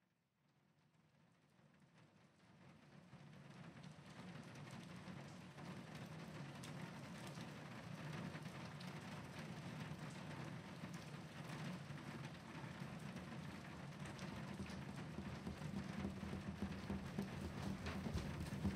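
Rain falling steadily, with the patter of individual drops. It fades in over the first few seconds and grows slowly louder.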